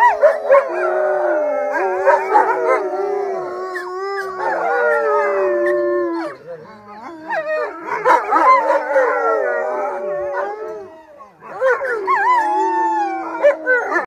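A pack of wolves howling in chorus, several long wavering howls at different pitches overlapping. The chorus thins briefly about six seconds in and again near eleven seconds, then swells back up.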